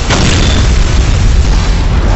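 Movie explosion sound effect: a loud, deep blast that rumbles on without a break.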